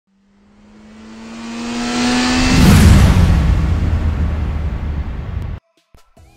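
A car speeding past. Its engine tone swells as it approaches, then drops in pitch with a loud rush of noise as it passes about two and a half seconds in, and fades into a rumble that cuts off suddenly near the end.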